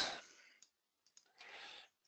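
A computer mouse clicking faintly, a couple of small clicks, followed near the end by a soft breath out.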